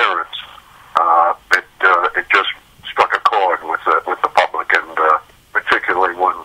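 A man talking over a telephone line, the voice thin and narrow.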